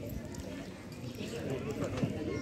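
Faint, indistinct voices talking.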